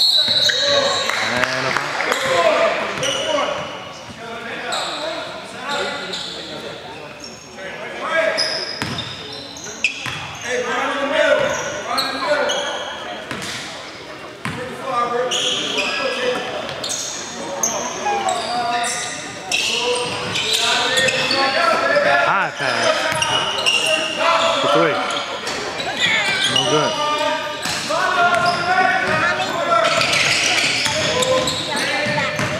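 Basketball game sounds in a gym: a ball bouncing on the hardwood floor, with indistinct shouts from players, echoing in a large hall.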